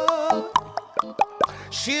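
A singer holds a note, then makes a quick run of about seven sharp tongue clicks, clip-clopping like a horse's hooves for a coachman's song. Singing starts again near the end.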